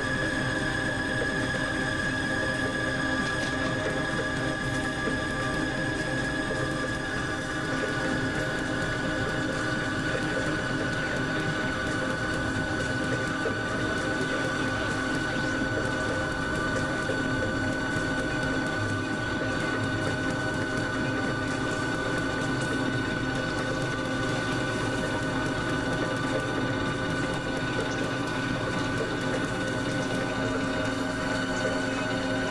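Experimental electronic drone-noise music: a dense, steady wall of many held tones over a grainy, fast-flickering mechanical-sounding noise. A thin high tone cuts off about seven seconds in, and a prominent mid-high tone drops slightly in pitch just after.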